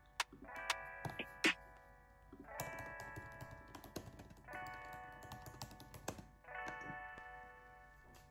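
Soft background music, a gentle chord sounding about every two seconds, over scattered clicks of typing on a MacBook keyboard.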